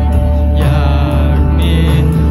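Live rock band performing a song over loud PA speakers, with a heavy steady bass and electric guitar. A sung vocal phrase with wavering, held notes comes in about halfway through.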